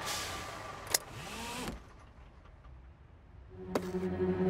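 Cartoon fire engine driving noise, which cuts off after about a second and a half. Within it there is a click and a short meow from a cat hidden in the cab. Near the end a click comes, and a steady low hum starts.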